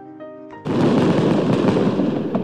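A few soft held musical notes, then, about two-thirds of a second in, a sudden loud burst of dense crackling noise that carries on steadily, like fireworks.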